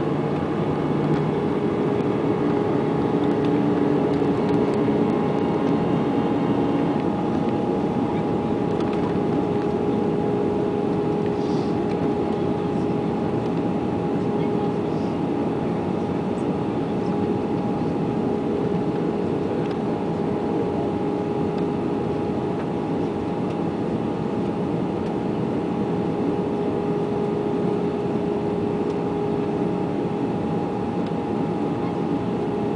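Airbus A320 cabin noise on the descent to landing: a steady rush of engine and airflow noise heard from a seat over the wing, with two steady hums, one low and one higher, running through it.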